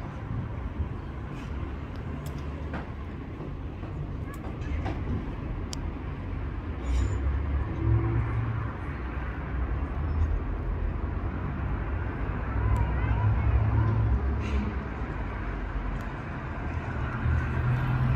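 Low, uneven outdoor rumble that grows louder about eight seconds in, with a few faint clicks.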